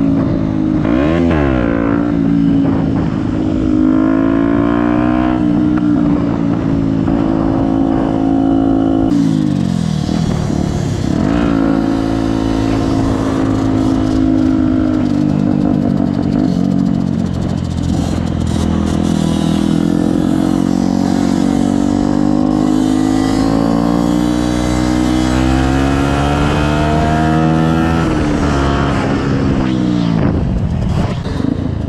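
Small dual-sport motorcycle engine heard from the rider's seat, blipped up and down in quick revs at first, then pulling up through the gears in rising steps, easing off and accelerating again, with wind rushing past.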